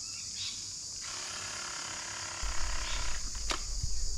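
Steady high-pitched drone of insects in the open air. From about two and a half seconds in, a low rumble with uneven bumps joins it.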